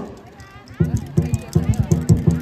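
Lion dance drum starting a fast, steady beat about a second in, around five or six strokes a second.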